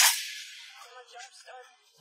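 Short shimmering sound effect: a sudden bright burst right at the start that fades away over about a second and a half.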